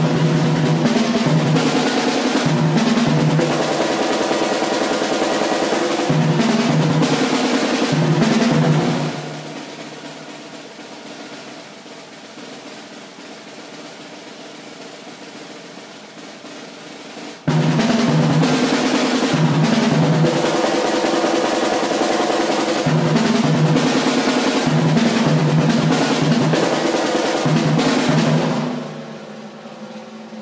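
Solo drum performance: loud, dense drumming with fast rolls and repeated rhythmic figures. About nine seconds in it falls to a much quieter passage, then the full playing cuts back in suddenly about halfway through, and it drops away again just before the end.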